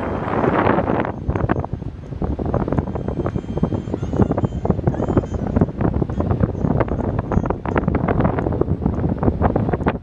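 Wind blowing hard across the microphone, buffeting it in uneven gusts.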